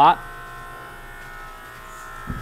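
Steady electrical hum with a few high, even whining tones over it and no change in level; a word of speech ends right at the start.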